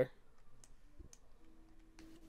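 A few faint, short clicks, then a faint steady hum that comes in a little past halfway.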